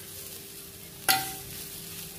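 Potatoes sizzling faintly in a clay pot while a steel spatula stirs them. About a second in, the spatula gives one sharp tap against the pot.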